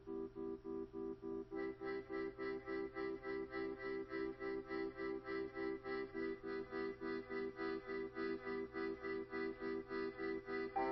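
Background music: sustained chords pulsing in a rapid, even rhythm, with higher notes joining about a second and a half in.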